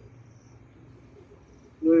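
Faint, high chirping repeated every half-second or so, like an insect in the background, with a man's brief 'oui' near the end.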